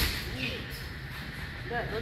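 Faint voices of people talking in the background over steady room noise.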